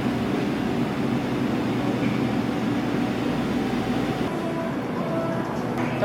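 Steady supermarket room noise: a continuous low hum and murmur, with no distinct events.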